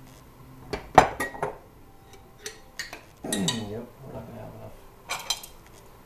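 Metal tongs clinking and scraping against a stoneware fermenting crock and glass jars while sauerkraut is transferred. A sharp clink about a second in is the loudest, with scattered lighter clinks after it.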